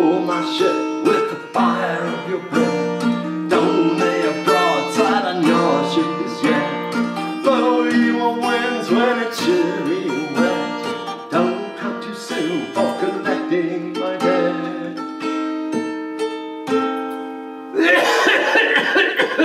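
Acoustic guitar playing an instrumental break of a country-folk song, strummed and picked with ringing chords and frequent strokes.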